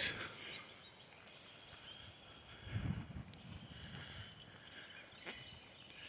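Quiet outdoor background noise with a brief low rumble about three seconds in and a single sharp click near the end.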